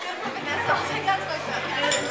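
Chatter and voices in a crowded bar between songs. From about half a second in, a low steady hum runs under the voices for roughly a second and a half.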